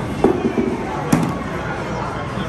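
A small ball knocking onto the lane of an arcade bowling game, two sharp knocks about a second apart, over a steady din of arcade noise and voices.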